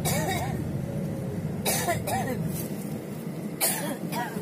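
Steady low rumble of a road vehicle driving, heard from inside its cabin. Over it come three short bursts of a person's voice, one near the start, one a little under two seconds in and one near the end.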